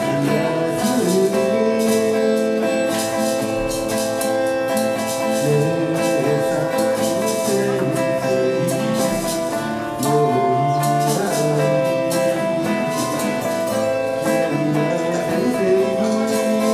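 Steel-string acoustic guitar strummed in a steady rhythm, accompanying a folk song.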